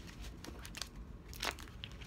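Faint rustling and a few light clicks of a deck of oracle cards being handled and shuffled.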